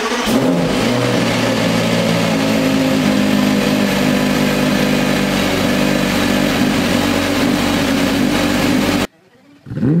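Porsche Carrera GT's 5.7-litre V10 idling steadily just after start-up. About nine seconds in it cuts off abruptly, and after a moment a Carrera GT engine rev starts to rise.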